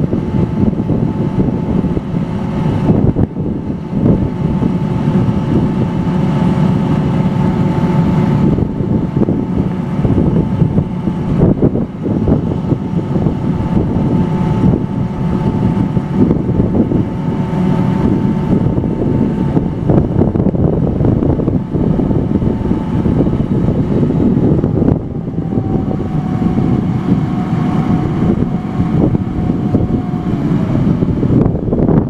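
Loud, steady machine noise of an ag plane being loaded from a tender truck's auger, with a faint steady whine that drops a little in pitch about 25 seconds in. Wind buffets the microphone.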